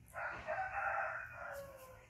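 A rooster crowing: one long call that falls in pitch near the end.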